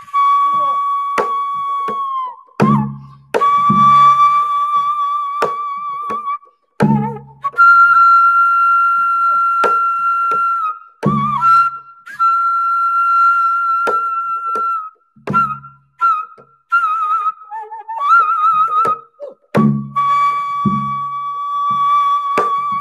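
Daegeum, the Korean bamboo transverse flute, playing sanjo: long held notes with wide wavering vibrato, bending and drooping at their ends. A janggu drum answers with a few sparse, deep strokes.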